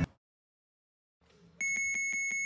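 Silence for about a second and a half, then a high, steady electronic beeping tone with a fast, even pulse near the end.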